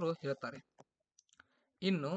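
A man lecturing in Kannada finishes a phrase, then a short pause with a few faint clicks, and his voice comes back near the end.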